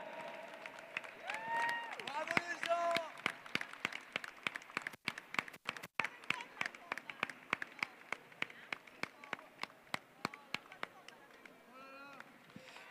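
Applause from a small audience, individual hand claps distinct and irregular, with a few voices calling out in the first three seconds; the clapping thins out near the end.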